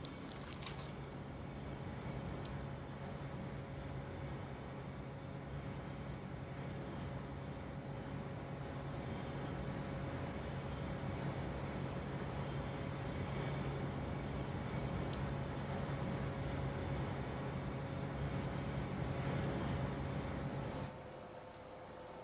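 Factory machinery running with a steady hum and a low drone, slowly getting a little louder. It cuts off about a second before the end and gives way to a quieter, higher hum.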